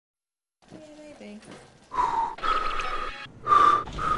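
Whistling made by blowing on spoonfuls of hot soup to cool them. A few faint low notes come first, then three loud breathy whistled notes about half a second to a second apart, each one a single held pitch with a rush of breath.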